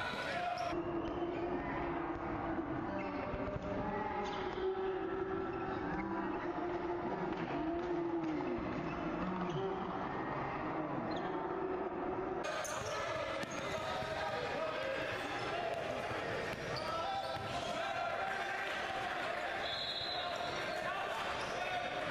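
Live sound of an indoor basketball game: a ball bouncing on the court among many voices calling and shouting, echoing in a large gym. The sound changes abruptly about a second in and again around the middle, where clips from different moments are cut together.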